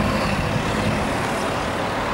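A car driving past on the road, a steady rush of engine and tyres.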